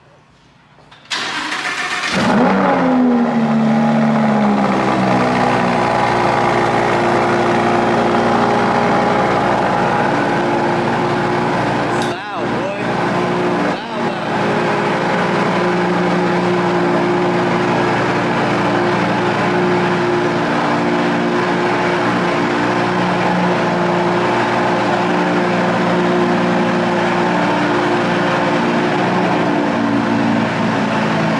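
Lamborghini Huracán's 5.2-litre V10 cranking and starting about a second in, flaring up on catching and then settling, falling in pitch, to a loud, steady cold-start idle.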